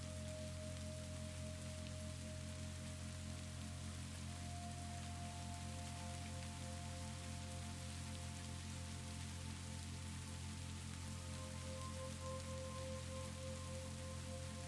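Steady rain falling, with soft ambient background music beneath it: a low steady drone and slow, held notes that change every few seconds.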